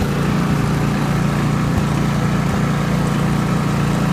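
Ride-on lawn mower engine running at a steady speed, a continuous low hum with no revving.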